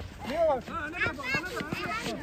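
Several people shouting and calling out, excited cries with pitch swooping up and down and no clear words.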